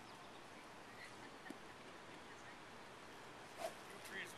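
Quiet open-air ambience on a golf course: a low steady hiss with a few faint short chirps, and one brief louder sound about three and a half seconds in.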